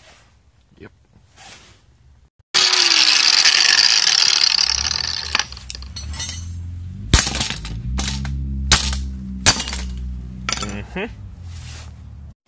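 Cordless angle grinder starting suddenly about two and a half seconds in and running loudly for a couple of seconds, then settling to a lower steady hum broken by several sharp metallic knocks and clinks.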